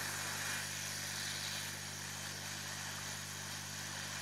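Hot-air rework station blowing on a motherboard to desolder a transistor: a steady rush of air over a low, even hum.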